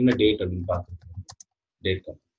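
Computer keyboard being typed on: a quick run of about five keystroke clicks about a second in, as a short command is typed and entered, with a man's voice speaking just before and briefly near the end.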